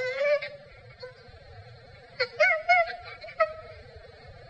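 Chimpanzee vocalizing: a short wavering call right at the start, then a longer run of pitched, wavering calls from about two seconds in.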